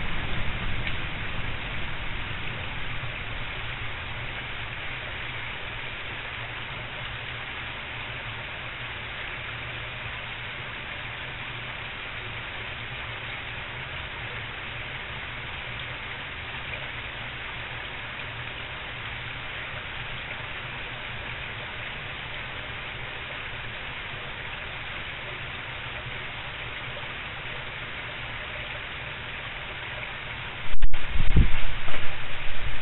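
A steady, even rushing hiss like rain, with a low rumble that dies away over the first few seconds.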